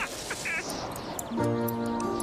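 Cartoon soundtrack: a noisy rustle with a few short squeaky calls, then a held musical chord that comes in about a second and a half in.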